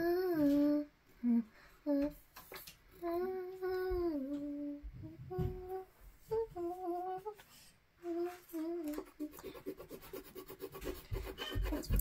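A young girl humming a wordless tune in short phrases, with brief pauses between them.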